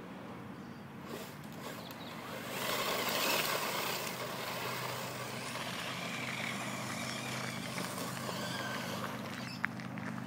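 Radio-controlled buggy driven fast over loose gravel, its spinning tyres spraying grit. The noise swells about two and a half seconds in and then holds steady.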